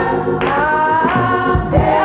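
A woman soloist singing a gospel song into a microphone, with long held notes that glide in pitch, backed by a choir and low bass beats.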